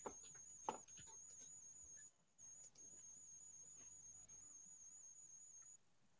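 Near silence with a faint, steady high-pitched electronic whine that wavers slightly, breaks off briefly about two seconds in and stops near the end. Two faint clicks come near the start.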